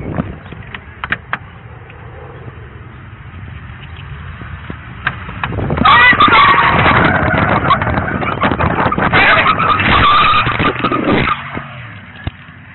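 Police patrol car pulling away under power, heard close on an officer's body-worn camera, with loud scuffing and knocking as he grabs at the car and is pulled to the ground. The din starts about six seconds in and drops away near the end.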